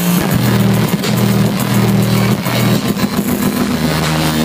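Electronic dance music played loud over a club sound system, with a low bass line held in notes of about a second each.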